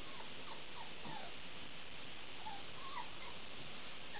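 A chihuahua whimpering faintly: several short, high whines scattered over a steady background hiss.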